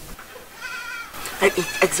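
A farm animal bleating once in the background, a short, slightly wavering call.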